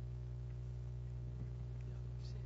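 Steady low electrical hum of a microphone sound system over quiet room tone, with a couple of faint clicks.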